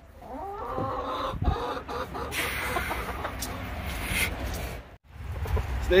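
Domestic hens clucking, their calls bending in pitch, over the first couple of seconds, followed by about two seconds of rustling noise; it all stops abruptly about five seconds in.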